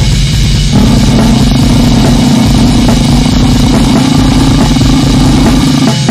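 Loud, dense extreme metal music with a drum kit, the sound filling out just under a second in.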